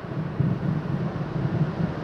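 Wind rumbling on a handheld microphone: a steady rush whose low end swells and fades.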